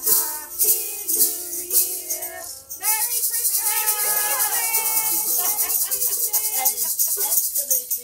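A group of carolers singing a Christmas carol, with maracas shaken to the beat. About three seconds in, the shakers change to a fast, continuous rattle.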